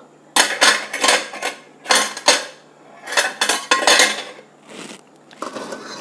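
A metal spoon clinking and scraping against a wok in several short bursts, the metal ringing faintly after some of the knocks.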